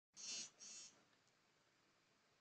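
Near silence, broken in the first second by a faint breath in two short parts.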